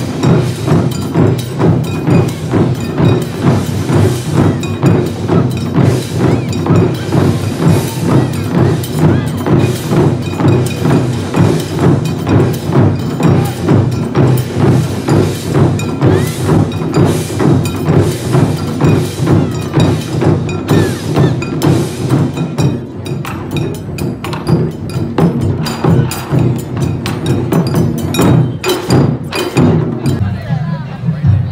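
Live ensemble of Japanese taiko drums playing a fast, steady beat of deep drum strikes mixed with sharp wooden clicks. About two-thirds of the way through, the deep strikes thin out while the sharp clicks go on.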